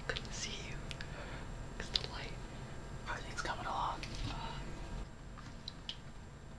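A person whispering, breathy and unvoiced, with a few sharp clicks among it.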